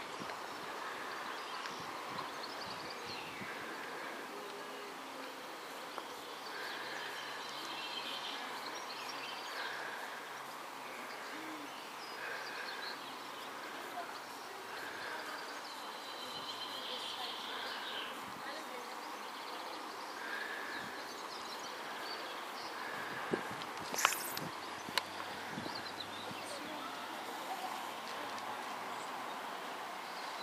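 Faint outdoor ambience: birds calling, including one short call repeated about every two seconds, over a faint low hum from a distant diesel locomotive approaching. Near the end come a few sharp knocks, like the camera being handled.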